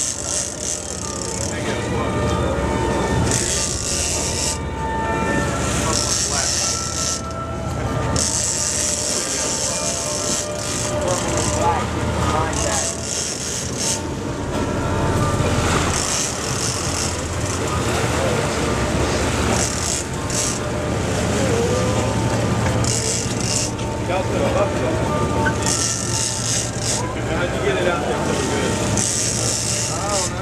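Sportfishing boat's engines running steadily, with gusts of wind on the microphone every few seconds and indistinct voices in the background.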